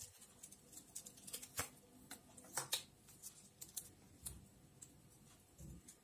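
Faint paper rustling and light, scattered ticks as strips of pH litmus paper are torn from their booklet and handled.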